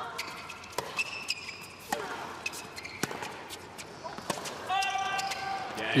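A tennis rally on a hard court: racket-on-ball hits about once a second, with short squeaks of shoes on the court. Near the end a voice calls out, the late line call that ends the point.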